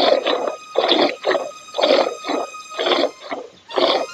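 Milk squirting from a cow's teats into a metal bowl during hand milking: a steady rhythm of short hissing squirts, about two to three a second, as the hands alternate.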